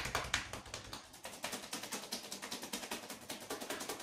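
Rapid percussion massage with the hands on a seated man's neck and shoulders: quick, even taps at about a dozen strikes a second. It is used here to loosen and check the neck and collar zone.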